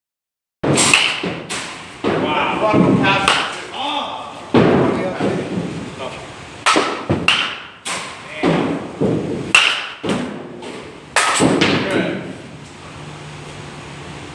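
A baseball bat striking pitched balls again and again in a batting cage: sharp impacts every one to two seconds, several of them followed closely by a second knock. A voice talks between the hits.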